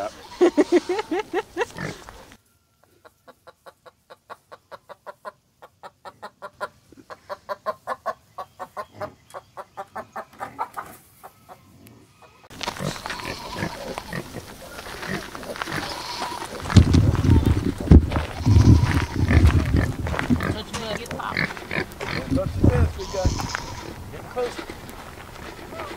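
Pigs grunting in a pen, loudest in the last several seconds. Before them comes a stretch of short, evenly repeated tones, about three a second, that swell and then fade.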